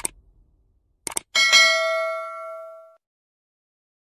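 Subscribe-button animation sound effect: a quick double click about a second in, then a bright notification-bell ding that rings out and fades over about a second and a half.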